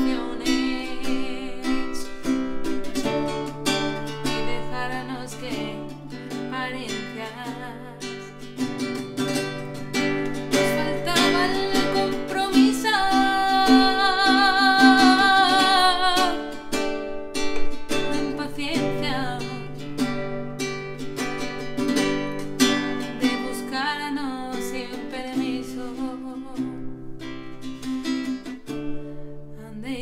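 A woman singing a slow ballad in Spanish to her own classical guitar accompaniment. About halfway through, her voice rises to a long held note with vibrato.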